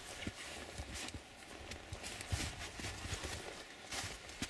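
Irregular footsteps of hikers' boots on the rocky, partly snow-covered floor of a narrow trench: faint knocks and scuffs, a few each second.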